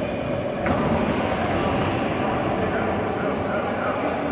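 Echoing sports-hall ambience: a steady, loud din of voices from the spectators and corners around a kickboxing ring, with one brief knock about two-thirds of a second in.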